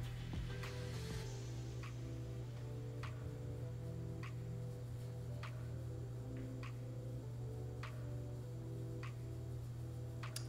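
Soft background music: a steady low bass with slowly changing held notes, and light ticking clicks every half second or so.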